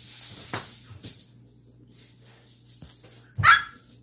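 A swishing rush in the first second as a plastic hula hoop spins around a child's waist, then a small dog barks once, short and loud, about three and a half seconds in.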